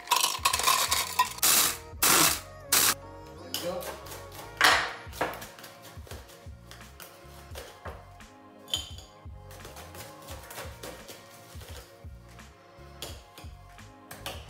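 Ice cubes clattering as they are tipped from a metal cup into a plastic mini-chopper bowl, followed by a few short loud bursts of the ice being crushed; later, lighter clinks and scrapes of a bar spoon scooping crushed ice. Background music plays throughout.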